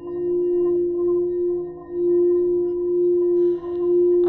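A singing bowl sounding one steady ringing tone with fainter overtones above it. Its loudness dips and swells again about every two seconds.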